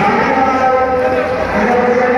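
A long, steady droning tone with overtones, like a drawn-out held voice or horn, over general hall noise.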